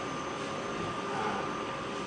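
Steady background hiss of room noise with a faint steady tone, no speech.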